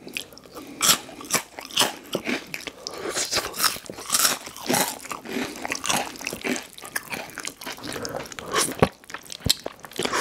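Close-miked mouth sounds of someone crunching and chewing Hot Cheetos: many sharp, irregular crunches, one after another, with chewing between them.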